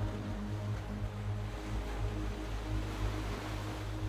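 Ambient meditation music: a steady low drone with sustained held tones, under a soft, even wash of ocean-surf sound.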